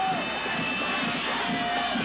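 Football stadium crowd noise: a steady din of many voices, with a drawn-out shout near the start and another near the end.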